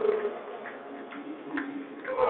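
A team's shouted cheer tails off at the start, leaving a lull of low hall noise and voices broken by a few faint clicks.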